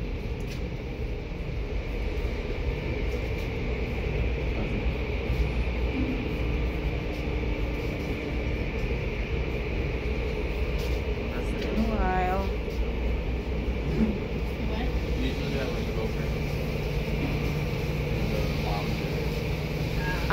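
Steady running noise of automatic tunnel car wash machinery (cloth brushes and water spray) heard through the glass of a viewing window. A further low hum joins about sixteen seconds in, and a faint voice is heard briefly around twelve seconds.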